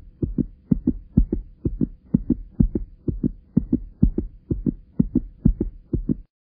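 Fast heartbeat sound effect: paired low thuds repeating about twice a second, over a faint steady hum.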